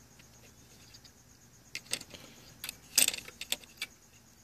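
Small clicks and scratchy rustles of fingers working thin lamp leads and heat-shrink tubing against a metal lamp bracket. They come in scattered bursts in the second half, the loudest about three seconds in.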